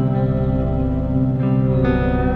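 Rock music: sustained, ringing guitar chords over a steady low drone, with a new chord coming in near the end.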